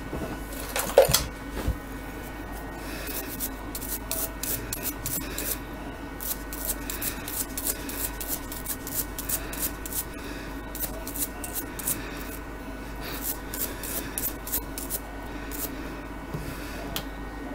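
A knock about a second in, then repeated short scraping strokes, a few a second with brief pauses, from something being rubbed or scraped by hand.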